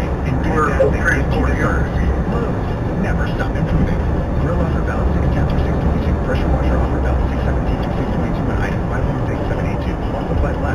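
Steady road and engine noise inside a moving car's cabin, with a car radio's talk playing indistinctly over it.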